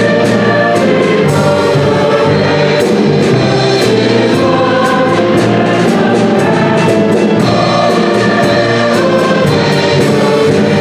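Mixed choir singing a Christmas anthem, accompanied by piano, violin and a drum kit that keeps a steady beat with cymbal strokes.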